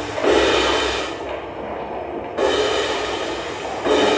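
Drum kit played with soft mallets in rumbling rolls across drums and cymbals. Each surge starts abruptly and fades, three in all, with a quieter gap in the middle, over a steady low hum.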